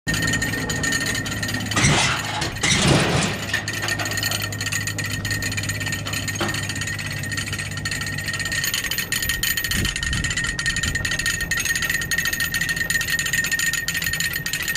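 Tractor diesel engine running steadily at idle, with two louder noisy bursts about two and three seconds in.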